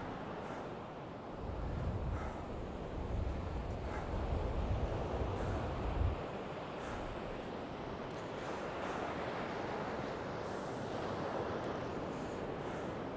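Rough North Sea surf breaking and washing up a sandy beach, a steady rushing wash. For the first half, gusts of wind buffet the microphone with a low rumble that cuts off about six seconds in.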